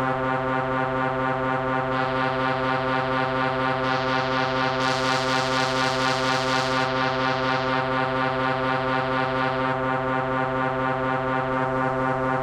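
Electronic music intro: a sustained synthesizer drone chord with a steady pulsing throb. A hissy noise layer comes in about two seconds in, grows brighter in the middle and fades out near the end.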